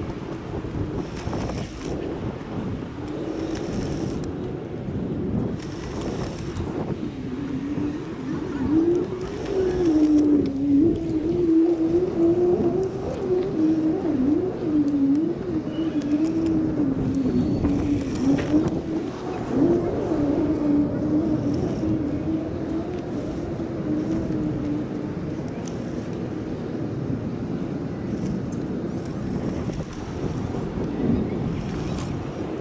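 A motor running with its pitch wavering up and down, louder for a while about ten seconds in, over outdoor wind noise, with a few short scrapes early on.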